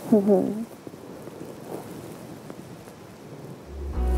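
A brief vocal sound right at the start, then a steady soft hiss of outdoor background noise. Music with a deep bass note comes in near the end.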